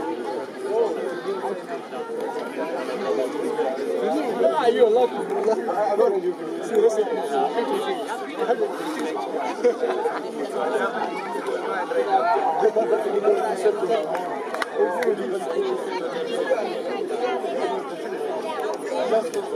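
Many voices talking over one another, a steady chatter of onlookers with no single voice standing out.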